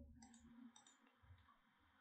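Near silence, with a faint double click of a computer mouse about a quarter second in.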